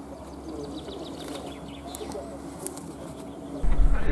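Birds calling faintly, a few scattered chirps and calls over quiet outdoor background. Near the end it cuts abruptly to a 4x4's engine and road noise, much louder, heard from inside the cabin.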